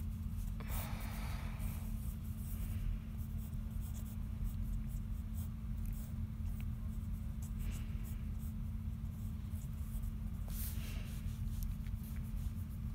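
Pencil scratching on sketchbook paper in short, intermittent sketching strokes over a steady low hum.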